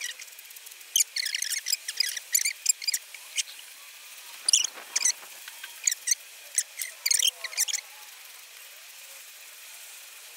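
Aerosol spray-paint can being used on a steel bracket: a quick run of short, high clicks and hisses about a second in, then scattered short bursts, stopping near the end.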